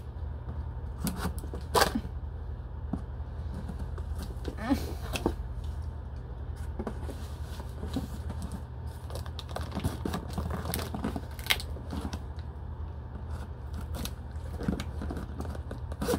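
Scissors and hands cutting and tearing packing tape and packaging open on a shipped parcel: scattered snips, rips and crinkling, with the sharpest click about two seconds in. A steady low hum runs underneath.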